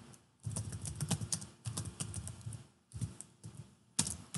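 Typing on a computer keyboard: three quick runs of keystrokes with short pauses between them.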